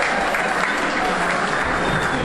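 Audience applauding, with people talking over the clapping.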